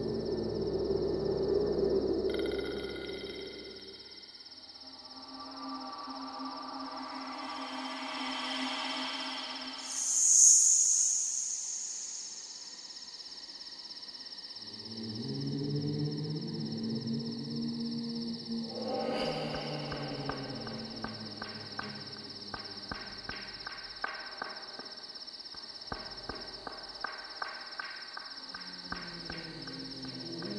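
Horror film score: low sustained eerie tones that swell and fade, with a loud rising whoosh about ten seconds in, over a steady chirping of crickets. In the second half a regular ticking, a little more than once a second, joins the drone.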